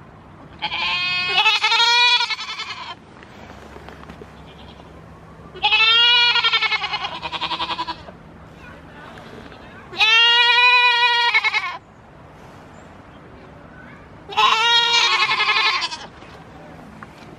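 Goats bleating: four long, quavering bleats, each about two seconds long, coming roughly every four seconds.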